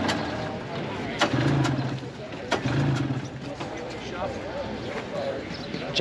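Indistinct voices of people talking in the background, with a few sharp clicks scattered through.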